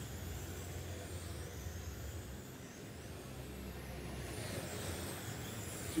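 Electric RC touring cars racing on an indoor carpet track, their motors giving a faint high whine that rises and falls as the cars accelerate and pass, over a steady low hum in the hall.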